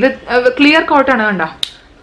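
A woman talking, then a single sharp click a little past halfway, from a lipstick tube being handled.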